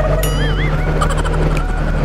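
Motorcycle engine running at a steady cruise, with road and wind noise. About a quarter second in, a short warbling, wavering whistle-like sound rises and falls over it.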